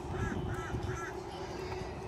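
A crow cawing three short times in quick succession, over a steady low outdoor rumble.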